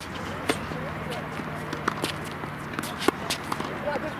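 Tennis ball being struck and bouncing during a singles rally on a hard court: sharp pops about half a second, two seconds and three seconds in, over steady court background noise with a low hum.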